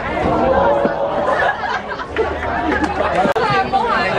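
Several spectators' voices talking and calling out over one another, with a single sharp knock near the end.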